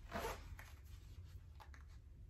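Zipper on a pair of denim jeans pulled up in one short zip near the start, followed by a few faint rustles and small clicks of the fabric.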